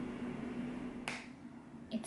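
A steady low hum with faint hiss, cut off about halfway through by a single sharp hand clap, after which the room is quieter.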